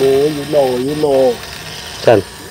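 A person's voice, a short wavering vocal sound with no clear words, lasting about the first second and a half and then stopping, leaving steady background noise.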